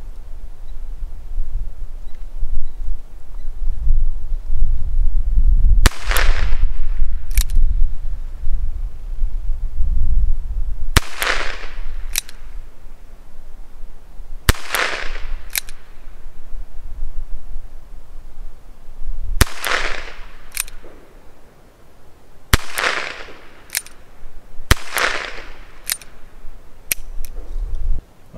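Ruger Wrangler .22 LR single-action revolver firing Blazer rimfire rounds: six sharp shots spaced about two to five seconds apart, each trailing off in a short echo.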